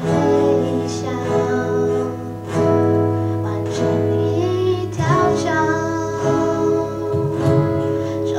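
Live female vocal sung into a microphone over two strummed and picked acoustic guitars, with bass and cajon underneath; the full band comes in abruptly at the start.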